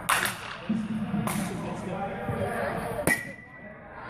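Softball bat hitting balls off a batting tee: sharp cracks about a second apart. The strongest comes about three seconds in and rings briefly with a ping. Voices murmur between the hits.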